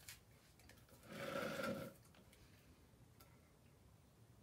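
A metal paint tin being handled on the floor: a light click, then about a second in a short grating scrape with a ringing tone, lasting under a second.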